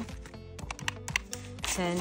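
Key clicks from a retro-style desk calculator with round typewriter-style keys: a quick run of several presses as a new running total is entered.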